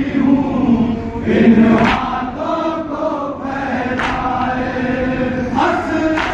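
Men's voices chanting a noha, a Shia mourning lament, together, with a sharp slap of hands on chests about every two seconds keeping the beat of the matam.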